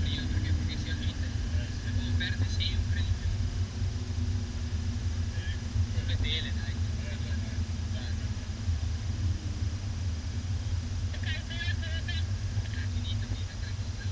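Lamborghini Gallardo V10 engine heard from inside the cabin, a steady low rumble at low revs as the car slows in second gear.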